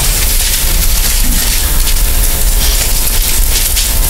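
Loud, steady hiss and static from the recording chain, with a faint steady hum underneath, filling a pause with no other clear sound.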